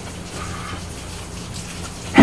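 Steady background hiss with a low hum underneath.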